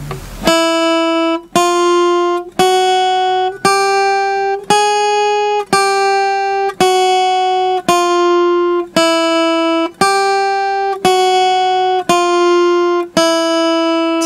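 Guitar playing a slow single-note melody on the top strings, one plucked note about every second, stepping up and down within a narrow range. The last note starts near the end and is held.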